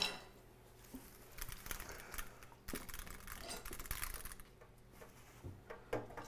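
Faint scattered clicks and light taps of things being handled on a kitchen counter, with one sharper click at the very start.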